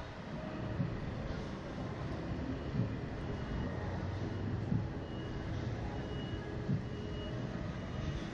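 Steady rush of wind over the microphone of a swinging SlingShot ride capsule, with a low thud about every two seconds.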